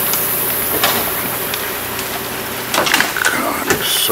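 A boat's bow pushing through a dense floating mat of water hyacinth, with irregular crackling and snapping of the plants' leaves and stems, busiest near the end, over the steady hum of the boat's motor.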